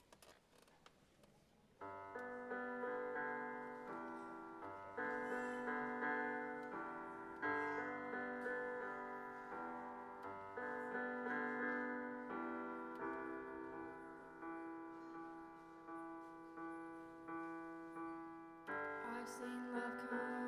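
Piano starts playing about two seconds in after a quiet start: a slow introduction of sustained chords, changing every couple of seconds with single notes struck between them.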